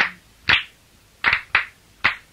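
Hand claps keeping time in a song during a pause in the singing: four sharp claps, the first two about half a second apart and the last two close together. A held sung note dies away just at the start.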